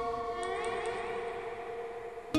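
Hard rock album track: held guitar notes ringing on, with a rising, sweeping sound over them from about half a second in.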